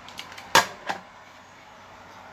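A few sharp clicks and knocks from handling a radio's hand microphone, the loudest about half a second in and another just before one second.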